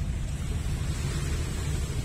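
Wind buffeting the microphone at the seashore: a steady, fluttering low rumble with a hiss of wind and water above it.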